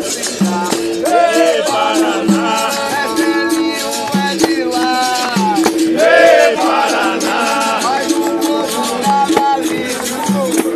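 Capoeira roda music: berimbaus sounding a repeating short figure about once a second with caxixi shakers rattling, a hand drum, and voices singing over them.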